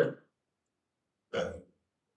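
A man's speech trails off into silence, broken once, about a second and a half in, by a single short vocal sound into the microphone, about a third of a second long.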